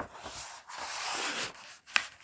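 A close-miked speaker breathing in between spoken phrases, heard as a soft hiss of about a second, with a mouth click at the start and another just before the end.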